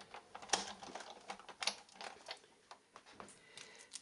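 Irregular clicks and light knocks from a Big Shot die-cutting machine as its handle is cranked and its acrylic cutting plates and thin metal Thinlits die are handled, with two louder clicks about half a second and just over a second and a half in.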